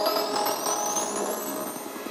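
Hardstyle electronic music in a break: the beat drops out, leaving a rising synth sweep over held synth chords, the whole getting quieter towards the end.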